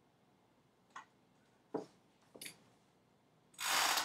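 Desk handling sounds: three faint clicks spread over about two seconds, then a short, loud rustle near the end as the drawing clipboard and its paper are shifted on the desk.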